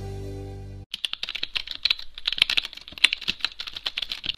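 Background music fading out and cutting off abruptly about a second in, followed by a rapid run of computer-keyboard typing clicks, a sound effect for an animated logo sting.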